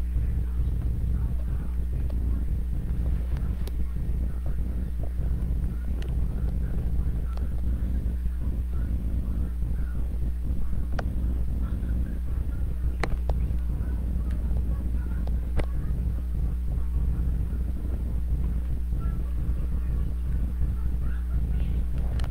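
A steady low hum runs throughout, with a few faint clicks.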